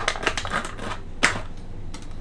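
Foil coffee bag crinkling and crackling as it is handled, a quick run of small crackles with one sharper crack a little over a second in.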